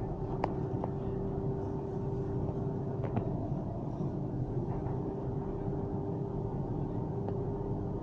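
Steady low rumble and hum of a moving public-transport vehicle heard from inside the passenger cabin, with a few faint clicks and rattles.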